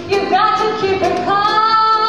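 A woman singing a show tune with a small band accompanying, her voice stepping up into a long held note in the second half.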